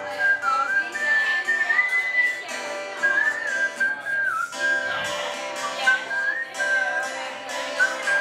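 A man whistling a melody over a strummed acoustic guitar. The whistle is a single clear tone that holds notes and slides between them.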